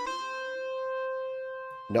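A held note from GarageBand iOS's 'Soft Analog' synth patch, a regular GarageBand synth sound rather than an Alchemy one. It closes a quick rising run of notes and rings on, slowly fading.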